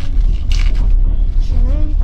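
Passenger train's steady low running rumble heard inside the compartment, with a brief crinkle of a clear plastic food cover being handled about half a second in.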